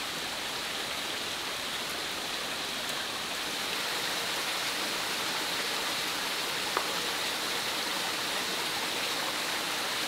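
Steady rushing noise of running water, a little louder from about four seconds in, with a single faint click a little past the middle.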